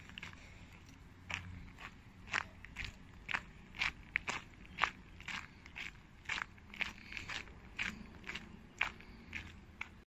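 Footsteps crunching on a gravel path at a steady walking pace, about two steps a second, starting about a second in.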